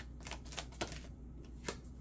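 Oracle cards being shuffled by hand: a handful of light, irregular card clicks and snaps, most in the first second and one more later.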